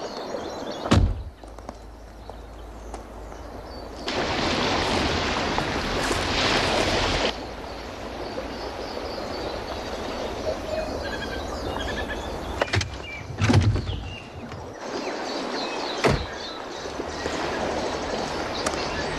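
A car door shuts with a solid thunk about a second in, and near the thirteen-second mark another car door is worked and thunks shut. Between them is a steady outdoor rush of noise that swells louder for about three seconds from around four seconds in.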